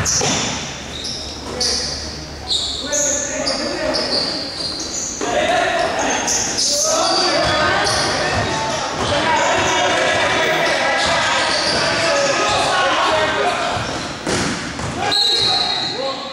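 Basketball game sounds in an echoing sports hall: a ball bouncing on the court floor and sneakers squeaking in short high chirps. Overlapping voices of players and onlookers swell into a steady din from about five seconds in until near the end.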